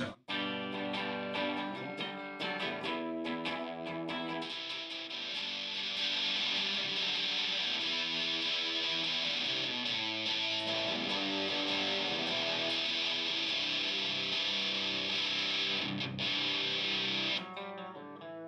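Electric guitar played through a Longsword overdrive at a low setting into the Model FET distortion pedal. Picked notes come first, then held, distorted chords ring on until they are cut off about half a second before the end. The Model FET adds to the dirt coming in, like a guitar running into a dirty amp.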